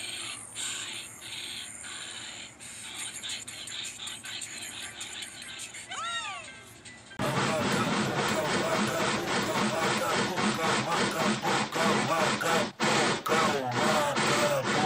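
Cartoon steam locomotive chugging uphill in rapid, even chuffs, with a voice chanting in time over the film's score. The first half is quieter and thinner, played through a tablet's speaker. A pitched call rises and falls just before the sound jumps louder about seven seconds in.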